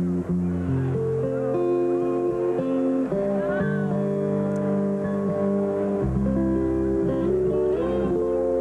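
Solo acoustic guitar played finger-style: ringing notes held over one another, moving to a new chord every second or so. A deep bass note drops out early and comes back about six seconds in.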